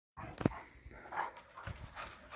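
Central Asian shepherd dogs making brief, faint vocal sounds, a short one about a second in, with a sharp click just before it.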